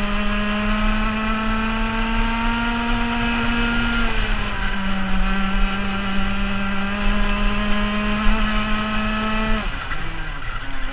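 Rotax 125 Max single-cylinder two-stroke kart engine at full throttle, its note climbing steadily in pitch. About four seconds in the pitch drops briefly as the throttle is eased, then it climbs again, and near the end it falls sharply as the driver lifts off for a corner.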